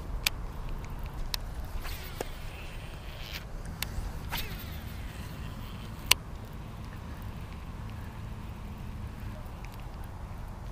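Baitcasting reel being handled and cranked during a lure retrieve, with a few sharp clicks scattered through, the loudest about six seconds in, over a low steady rumble.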